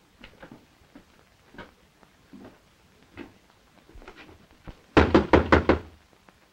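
Knocking on a wooden front door: a rapid run of about six loud knocks near the end, after a few seconds of faint, scattered soft sounds.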